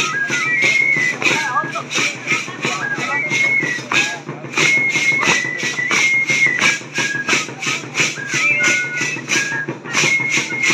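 Dance music for a danza: a drum beats steadily about three times a second while a high flute plays a melody of held notes that step up and down in pitch.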